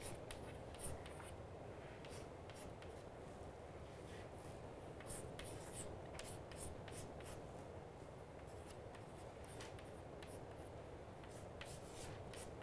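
Chalk writing on a blackboard: faint, irregular short taps and scratchy strokes as small diagrams are drawn, over a steady low room hum.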